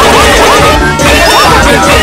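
Several video soundtracks playing over one another at once, very loud: cartoon music mixed with a dense jumble of repeated short warbling tones and harsh noise.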